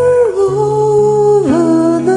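A solo voice singing long held notes over a sustained accompaniment, possibly guitar. The melody steps down in pitch twice and rises again near the end.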